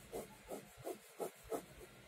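Pen scratching on paper in a run of short, quick strokes, several a second, as a car sketch's lines are drawn.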